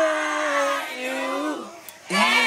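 A performer's voice holding one long sung call with no backing music, dropping slightly in pitch about a second in and fading out near the end.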